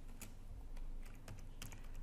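Computer keyboard typing: a handful of separate, quiet key clicks at an uneven pace.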